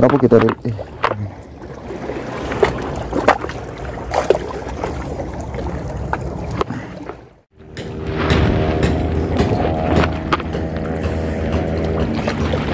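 Scattered clicks and rustling from handling the fishing line and bait, then, after a sudden drop-out about seven seconds in, a steady engine drone with an unchanging pitch.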